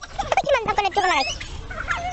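High-pitched, warbling laughter and squeals in a child's voice, in quick rising and falling bursts through the first second and a half.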